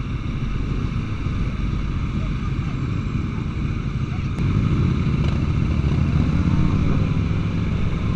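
Sport motorcycle engine running at riding speed, recorded on the bike itself, getting louder about halfway through.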